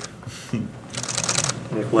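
A rapid burst of camera shutter clicks about a second in, lasting about half a second.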